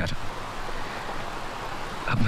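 A steady, even hiss of ambient background noise, with no distinct events.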